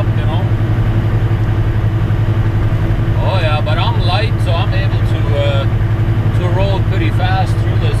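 Tractor-trailer's diesel engine running steadily at highway speed, a low, evenly pulsing drone heard inside the cab.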